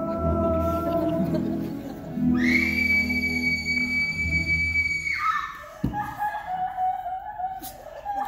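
The closing bars of a live stage-musical song: singers and band hold a final chord, then a single very high note is held for about three seconds and slides down as it cuts off. A sharp knock follows about a second later.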